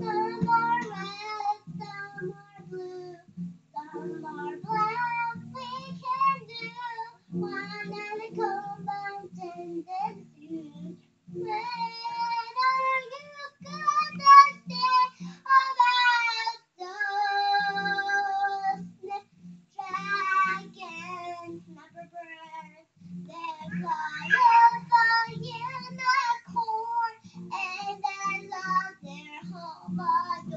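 A young girl singing, strumming along on an acoustic guitar with a steady low pulse under the melody. The melody breaks off for short pauses now and then.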